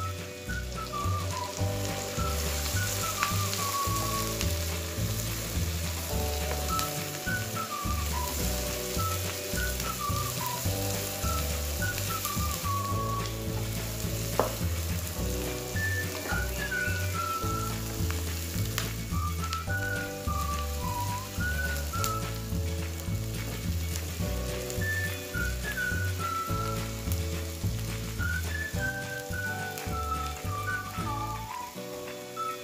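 Chopped shallots and spices frying in hot oil in a wok, sizzling steadily, over background music with a gliding melody line.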